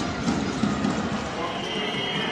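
Live basketball game sound: arena crowd noise with a rhythmic low thudding about three times a second, and a few high squeaks near the end.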